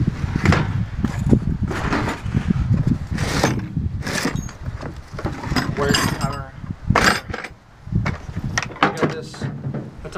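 Handling noise of tools and bags in a pickup truck bed: irregular knocks, clunks and rustles as a hard plastic Hitachi tool case is lifted out and opened.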